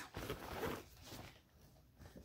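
Fabric tote bag rustling as it is lifted by its handles and spread open, fading out after about a second.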